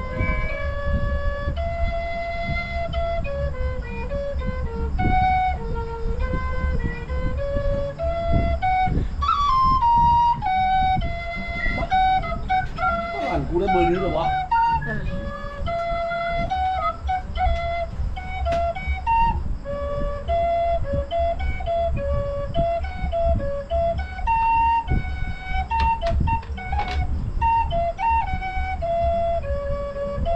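A wooden vertical flute, held upright like a recorder, playing a slow melody of held notes that step up and down, with some quick ornaments. A voice cuts in briefly about halfway through, and a steady low rumble runs underneath.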